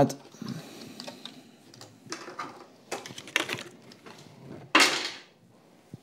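Clear plastic blister packaging being handled as a diecast toy car is taken out of it: scattered crinkles and clicks, with the loudest crackle about five seconds in.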